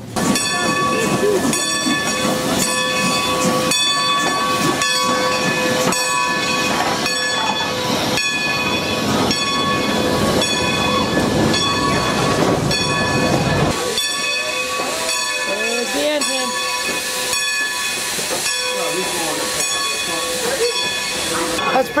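Steam locomotive's bell ringing steadily, struck a little faster than once a second, over the hiss of steam; the hiss drops away about two-thirds of the way through while the bell goes on.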